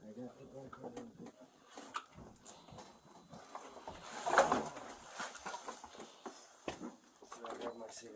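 Faint, indistinct voices in a small room, with rustling and light knocks and one louder short noise about halfway through.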